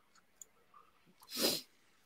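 One short, sharp breathy burst from a person, about one and a half seconds in, in the manner of a stifled sneeze.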